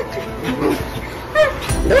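Two French bulldogs playing rough, giving a few short, high cries.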